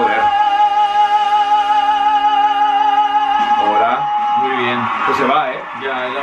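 A singer holds one long sustained note over the backing music of a stage performance. About four and a half seconds in the note ends and voices talking take over.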